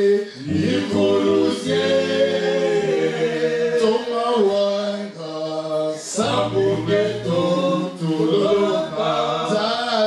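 Several men singing together in harmony into microphones, with long held notes.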